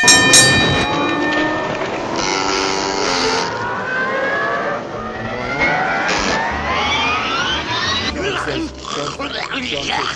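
Sound-effect intro stinger for a show segment: a sharp, ringing bell-like hit at the start, a hissing burst a couple of seconds in, then a long rising whine, mixed with wordless voice-like noises.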